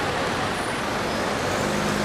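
Steady outdoor street ambience: road traffic noise with a constant even hiss and no distinct events.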